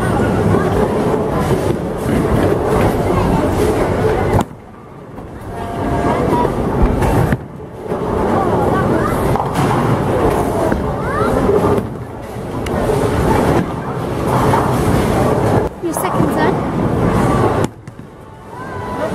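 Bowling alley din: the low rumble of bowling balls rolling down the wooden lanes, mixed with indistinct voices. The sound drops away abruptly several times, about four, seven and sixteen seconds in.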